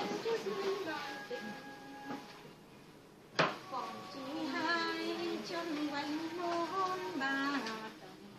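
A woman singing a slow tune in long held notes that step up and down, with a short pause partway through. A single sharp click cuts in about three and a half seconds in.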